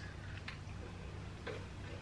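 A few faint, sharp crunches of biting into and chewing a chocolate-coated Tim Tam Double Coat biscuit, over a low steady hum.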